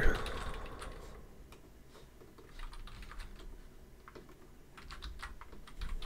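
Typing on a computer keyboard: short, irregular runs of fairly quiet keystrokes.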